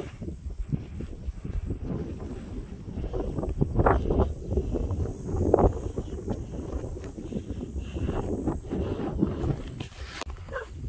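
Wind buffeting the microphone: an uneven low rumble that rises and falls with the gusts.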